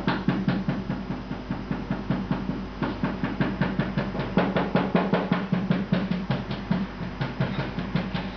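Rapid, irregular clicking and knocking from food and kitchen utensils being worked by hand at a table, amplified as part of a performance piece. The sound comes as several sharp strokes a second, each with a low thud under it, and thins out near the end.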